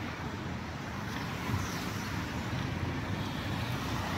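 Steady city street ambience: a low, even rumble of road traffic with no single vehicle standing out.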